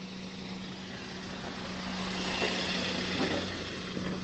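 Steady engine drone: a constant low hum under a rushing hiss, growing a little louder past the middle.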